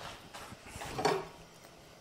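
Soft metallic handling noises from a scooter's CVT variator being refitted by hand: a small click at the start, then a faint scraping rustle about a second in.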